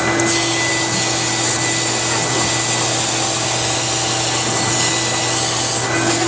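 Canister vacuum cleaner running steadily: a constant rush of air over an even motor hum, with a thin high whine held at one pitch.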